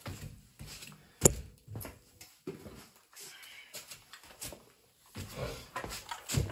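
Footsteps and handling noise indoors: one sharp knock about a second in, then a few fainter knocks and rustles as something is picked up and carried.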